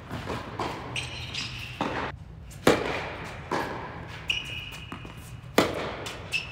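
Tennis rally on an indoor hard court: sharp racket strikes and ball bounces ringing through the hall, the loudest hits near the middle and near the end. Sneakers squeak on the court surface between shots, around a second in and again for about a second near the end.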